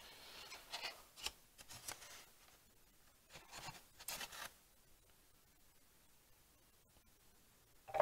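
Faint rustling and light clicks of small statue parts being picked out of a packing box, in a few short bursts over the first half, then near silence.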